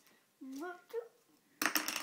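A brief voice-like sound, then near the end a loud, rapid crackling squelch as noise putty is squeezed, with air popping out of the pink putty.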